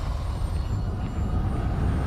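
Loud, dense low rumble with a hiss over the top, holding steady: a horror trailer's sound-design drone.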